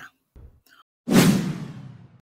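A whoosh transition sound effect about a second in: a sudden swish of noise that fades out over about a second.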